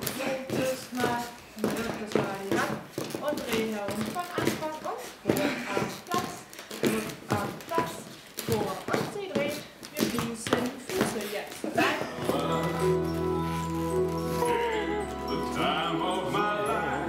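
Feet tapping on a hard floor in a rhythmic run of partner-dance steps, with voices among them. About twelve seconds in, music with held chords and a steady bass starts.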